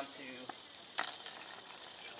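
A single sharp metal clink about a second in, like climbing carabiners knocking together, with a few fainter ticks and rustling around it.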